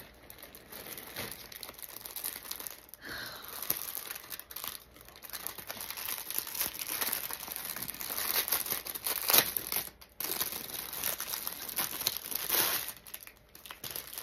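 Thin plastic packaging bags crinkling and rustling as they are handled and opened, with the loudest crackles about nine seconds in and again near the end.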